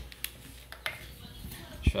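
A few sharp clicks and light knocks from a stone-weighted plastic pot being gripped and turned in the hands, with a louder thump near the end.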